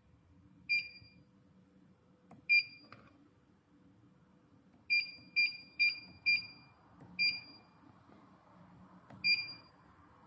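A flat knitting machine's touchscreen control panel beeping at each key press: eight short, high beeps. Four come in quick succession about five seconds in, as a password is keyed in.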